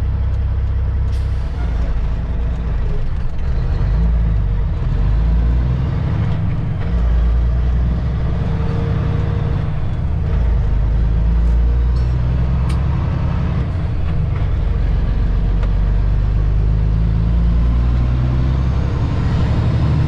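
Caterpillar C15 twin-turbo diesel of a semi-truck heard from inside the cab, running with a deep, steady drone as the truck pulls away under a heavy load of poles. The engine note dips briefly a few times.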